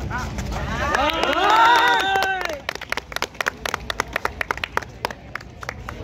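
Several voices at a kabaddi match shouting together, rising and falling in pitch for about two seconds, followed by quick, uneven hand clapping, several claps a second, which lasts almost to the end.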